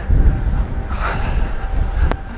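Loud, uneven low rumble of wind buffeting an outdoor microphone, with a brief hiss about a second in.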